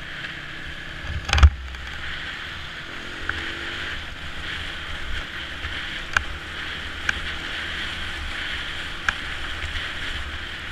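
Off-road motorcycle ridden at speed on a gravel track, heard from a helmet camera: a steady rush of wind and tyre noise over a low engine rumble. Several sharp knocks break through, the loudest about a second and a half in and smaller ones near six, seven and nine seconds.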